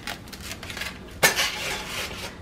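Foam egg carton handled and set down on an electric stovetop, with a few light clicks and then a scraping rustle about a second in as it slides into place among the other items.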